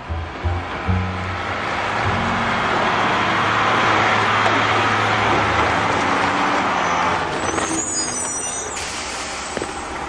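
Cartoon recycling truck's engine running loudly as it pulls up, swelling to a peak about four seconds in and then easing off, with background music underneath.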